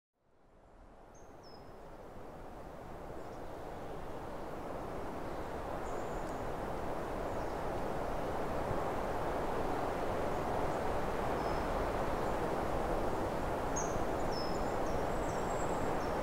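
Outdoor nature ambience fading in from silence: a steady rushing noise, with a few faint, high bird chirps, most of them near the end.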